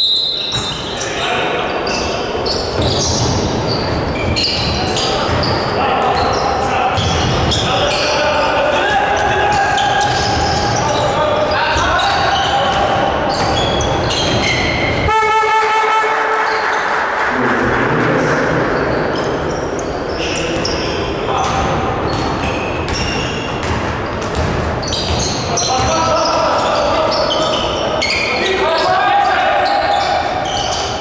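Basketball being dribbled on a wooden court, with repeated sharp bounces echoing in a large hall, mixed with players' shouts. A short horn-like buzzer tone sounds about halfway through.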